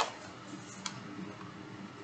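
Two sharp clicks, the first at the very start and a smaller one just under a second later, over a faint steady low hum.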